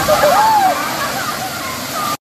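Waterfall of about five metres pouring into a plunge pool: a steady rush of falling water, with voices calling out over it.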